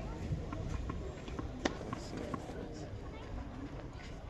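Light, sharp taps of a tennis ball being handled and bounced between points, the loudest about one and a half seconds in, over a low wind rumble and faint voices.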